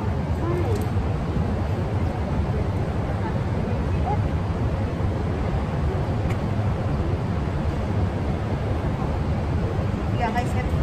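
Steady low rumble of urban background noise with no distinct events.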